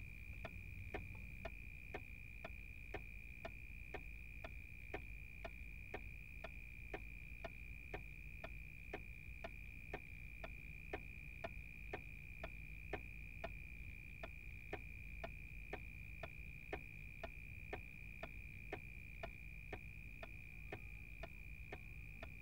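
Faint clock ticking steadily, about two ticks a second, over a steady high-pitched tone.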